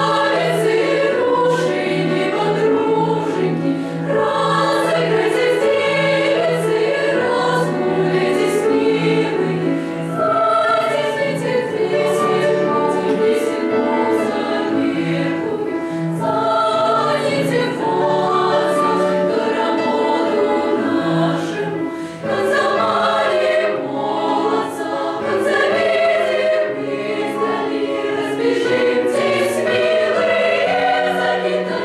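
Children's choir singing a sustained piece, several voices sounding together, with a brief pause between phrases about two-thirds of the way through.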